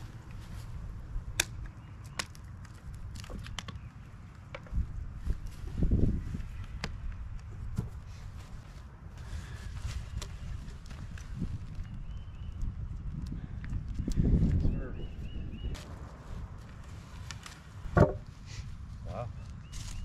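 Scattered clicks and knocks of hand work as fittings are taken off by hand, with a few heavier thumps and one sharp knock near the end, over a low steady rumble of wind on the microphone.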